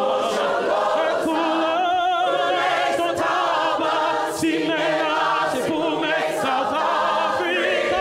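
Mixed-voice choir singing, led by a male soloist singing into a handheld microphone, his sustained notes wavering with vibrato.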